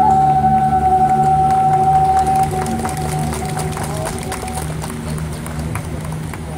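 Thai classical ensemble music. A long held high note fades out about two and a half seconds in, over steady low notes and light, regular ticks, and the music dies down toward the end.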